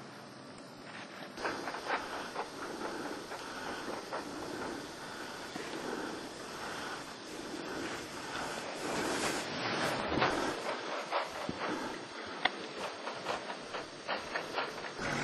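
Skis hissing and swishing through deep powder snow, swelling with each turn about once a second, with small clicks and a louder stretch near the middle.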